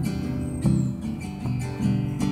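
Acoustic guitar strummed, a few chords struck in turn with their notes ringing between strokes.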